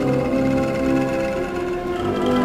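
Military band playing a slow passage of long held notes and chords.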